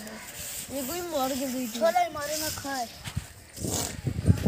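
A person's voice speaking quietly for a couple of seconds, followed near the end by a brief rustle.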